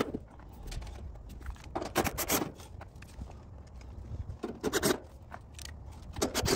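Sheet-metal service panel of an air-conditioner condenser being handled and fitted back onto the cabinet, metal scraping and rattling in two short bursts about two seconds in and again about four and a half seconds in.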